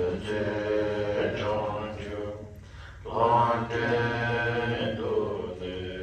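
A man chanting a Buddhist prayer text in a steady, sung recitation. It comes in two long held phrases with a short pause between them.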